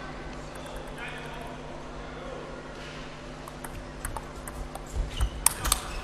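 Table tennis rally: the ball clicks sharply off the bats and the table, irregularly at first and then faster, with a few low thumps of the players' footwork on the court floor near the end. Underneath is a low, steady hall murmur.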